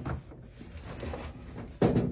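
Faint scraping and light knocking of a man's hand and arm working against the plastic drum and tub of a top-loading washing machine.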